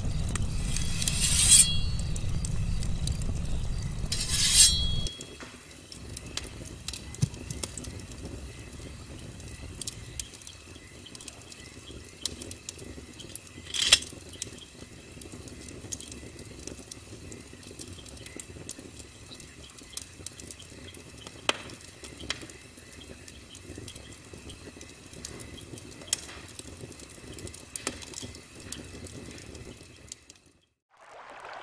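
Wood bonfire crackling with scattered small pops, with sharp metallic scrapes about one and a half, four and a half and fourteen seconds in. A heavy low rumble covers the first five seconds, then cuts out.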